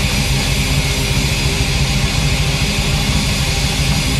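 Heavy metal band playing loud and without a break: distorted electric guitar over drums.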